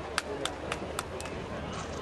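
Five sharp clicks in a row, about four a second, over steady outdoor stadium background noise.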